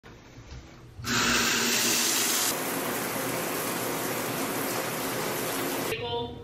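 Shower water turned on at a single-handle shower valve: a steady rush of running water that starts suddenly about a second in and eases slightly in level a second and a half later.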